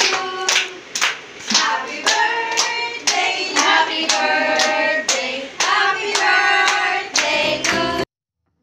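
A group singing with hands clapping in time, about two claps a second.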